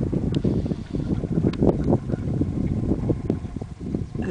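Wind buffeting the camera's microphone: an uneven, gusting low noise.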